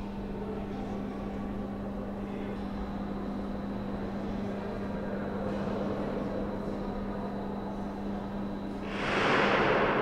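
Room tone of a large, echoing stone hall: a faint murmur of distant visitors over a steady low hum, with a brief louder rush of noise about nine seconds in.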